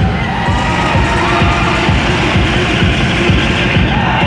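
Loud music with a dense low beat, mixed with a large crowd cheering and shouting.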